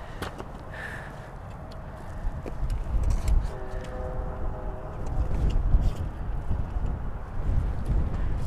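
Low rumble of wind buffeting the microphone outdoors, growing stronger after a couple of seconds, with a few faint clicks and a brief faint hum in the middle.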